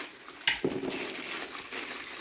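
A small clear plastic bag of table hardware crinkling as it is handled, with one sharp crackle about half a second in.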